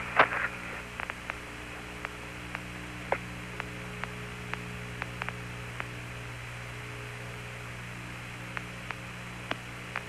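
Steady electrical hum and hiss on the Apollo lunar-surface radio downlink between transmissions, with scattered faint clicks.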